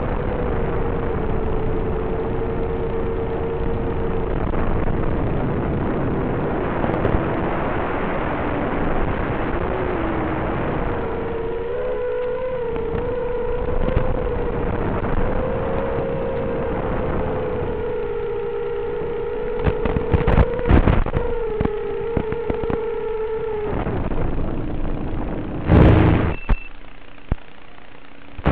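FPV racing quadcopter's electric motors and propellers whining at a steady pitch with small wobbles under rushing wind noise as it flies back and descends. The whine fades near the end, followed by a brief loud thump as it lands.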